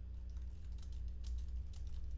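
Typing on a computer keyboard: a quick run of keystrokes over a steady low electrical hum.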